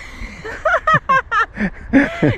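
Laughter: a quick run of short, high-pitched bursts from about half a second in, trailing off into a couple of falling sounds near the end.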